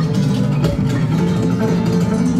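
Acoustic guitar music, flamenco in style, played through Estelon floor-standing loudspeakers driven by Moon by Simaudio amplification and heard in the room, with quick plucked notes over sustained tones.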